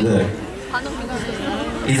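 Speech through a stage microphone with crowd chatter in the background; no music is playing.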